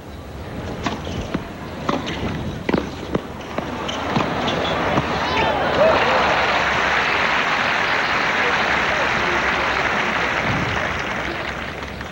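Several sharp tennis ball strikes from racquets during a serve-and-volley point, then stadium crowd applause and cheering that builds about four seconds in and fades near the end.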